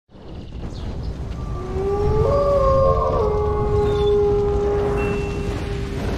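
Wolf howl sound effect: a howl that rises and then holds one long note, with higher howls overlapping it, over a deep low rumble.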